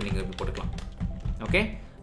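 Typing on a computer keyboard: a quick run of key clicks as a word is typed.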